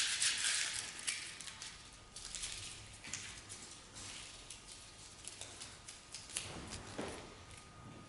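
Paper rustling: a run of irregular small crackles, busiest at first and thinning out toward the end.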